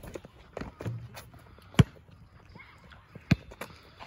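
A basketball in outdoor one-on-one play, with shoe scuffs and light footsteps on an asphalt court and two sharp ball impacts about a second and a half apart.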